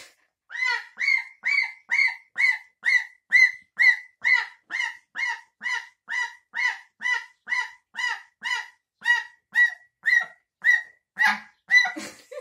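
A young white domestic goose honking over and over at a steady rhythm, a little over two short honks a second.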